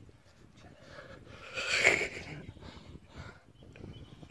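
A climber's hard, noisy breathing with the effort of mantling onto the top of a boulder, swelling to its loudest about two seconds in and then easing.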